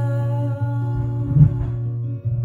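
A small-bodied acoustic guitar is fingerpicked with sustained notes ringing, joined by a wordless hummed vocal. A low thump comes about one and a half seconds in.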